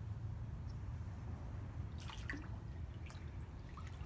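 Small splashes and drips of pool water as a swimbait is reeled fast at the surface, a few sharp ones about two seconds in, over a steady low rumble.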